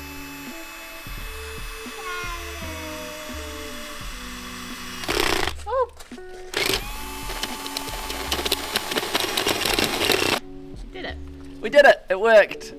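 Cordless drill fitted with a hole saw, run slowly while cutting into a grey PVC drain pipe. It runs in two stretches with a steady whine that drops in pitch as the saw bites; the first stops about five seconds in and the second cuts off near the end. Background music plays underneath.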